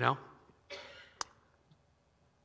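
A man's word "know?", then a short breath into a headset microphone and a single sharp click a little over a second in.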